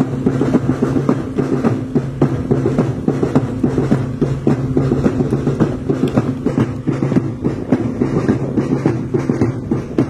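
Music with busy, quick drumming over a steady, held low tone, running on without a break.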